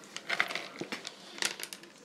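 Shelled pistachios being scooped by hand from a plastic tub and dropped onto a plate: irregular light clicks and rattles.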